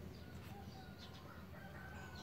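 Quiet pause with faint distant bird calls: a few thin held tones, the longest near the end.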